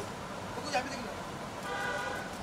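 A vehicle horn sounds in one short steady toot near the end, over a low murmur of voices.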